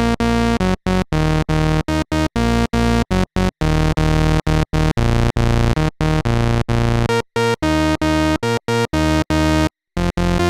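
Vintage Roland SH-101 analog monosynth playing a run of short staccato notes on a narrow pulse wave, each note cut off by a brief silence. The run breaks off with a slightly longer gap near the end.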